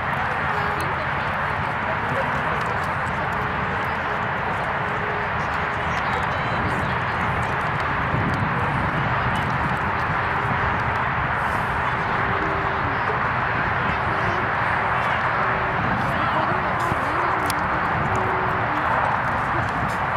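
Steady outdoor wash of noise at a soccer field with indistinct voices of players and spectators mixed in, no single sound standing out.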